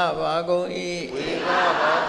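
Buddhist Pali chanting by voices reciting together, with a long held note in the first half followed by shorter phrases.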